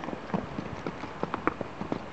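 Horse's hoofbeats: a quick, irregular run of about ten hoof strikes on the ground, starting about a third of a second in and running until near the end.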